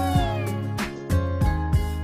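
Pop song backing track with a steady beat; right at the start a meow, a pitched call sliding downward for under a second, sounds as part of the song.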